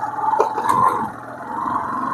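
Motorcycle engine running at road speed, a steady pitched drone with wind and road noise from the moving bike.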